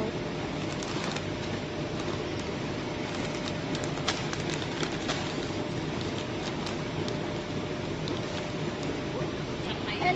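DS-420AZ vertical form-fill-seal packing machine with linear scales running steadily in production: an even mechanical noise with a faint steady hum and a few light clicks.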